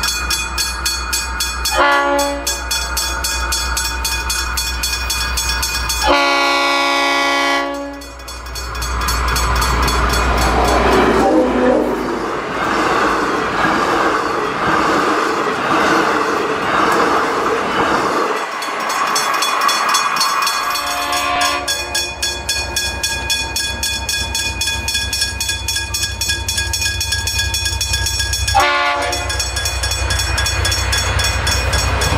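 A passenger train's horn sounds a short blast and then a longer one as the train approaches. The train then passes at speed with a loud rushing of wheels on the rails, and the noise settles to a steadier rumble. Another brief horn blast comes near the end.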